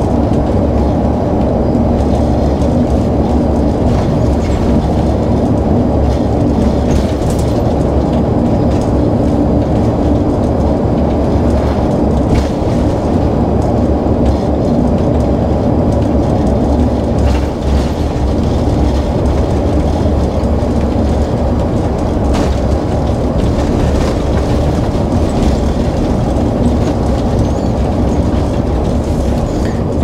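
Coach cruising on an open country road, heard from the driver's seat inside the cab: steady engine and road noise with no change in pace.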